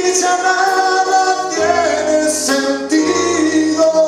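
Live rock band playing: a singer holding long notes over keyboard chords, bass and drums, with a cymbal crash a little past two seconds in.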